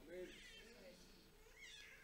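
Near silence: room tone, with a few faint, brief gliding pitched sounds near the start and again near the end.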